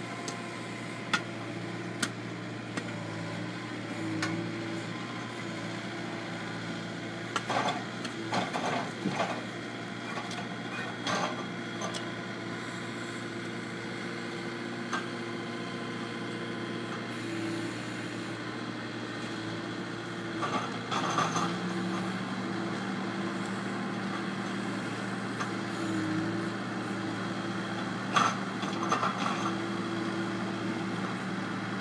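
Bobcat skid-steer loader's engine running steadily as it digs, with scattered knocks and clanks of the bucket and loader working the soil, in clusters about a quarter of the way in and near the end. A little past two-thirds through, the engine speeds up and holds the higher pitch.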